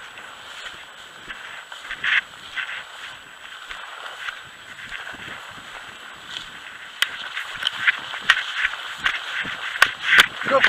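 Footsteps swishing and crunching through tall dry grass, the stalks brushing against the walker's legs. The steps come faster and louder from about seven seconds in.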